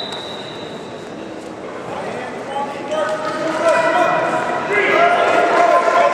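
Several people shouting indistinctly in a large echoing hall, starting about halfway through and growing louder toward the end.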